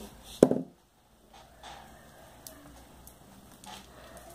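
Glass crystal beads and nylon thread handled at close range: a short sharp click about half a second in, then faint small ticks and rustling as the beaded strap is worked.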